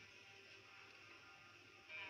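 Near silence with a faint, steady chord held by the stage band's instruments. The music swells back in just before the end.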